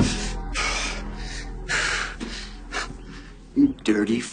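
A man knocked to the floor gasping for breath: four breathy gasps about a second apart, growing fainter, over low background music.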